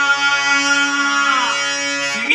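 Harmonium holding a steady sustained chord, with a singer's voice gliding briefly in pitch about one and a half seconds in.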